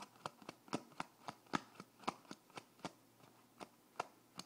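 Handling noise from a phone or camera held against the body: a quick run of sharp clicks and taps, about four a second, thinning out near the end.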